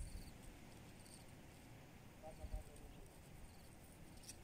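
Near silence: faint outdoor ambience, with a faint short sound about two and a half seconds in.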